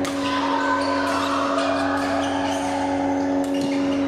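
Badminton play in a large hall: sharp racket strikes on shuttlecocks and occasional shoe squeaks on the court mat, over a steady hum.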